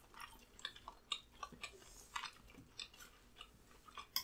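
Faint chewing of food: soft, irregular wet mouth clicks and smacks, a few times a second.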